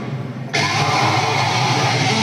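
Death metal band playing live with heavily distorted electric guitar. A thinner, muffled first half second gives way abruptly about half a second in to the full band sound, with cymbals.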